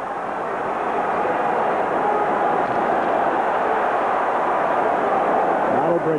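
Arena crowd cheering and roaring. The noise swells over the first couple of seconds and then holds steady.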